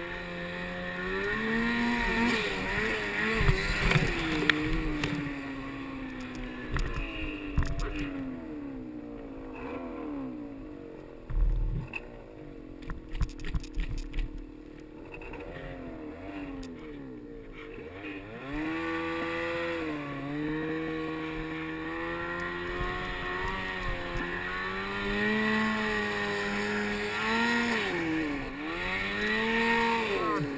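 Mountain snowmobile engine revving hard and easing off again and again as the sled ploughs through deep powder. About a third of the way in the engine drops low and quiet while a run of knocks and a dull thump come through as the sled bogs down, its hood buried in snow. From a little past halfway the throttle opens again in repeated surges.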